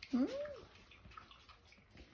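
A woman's short questioning "hmm?", then faint soft rustling and light clicks as two-week-old Morkie puppies shift about on a fleece blanket.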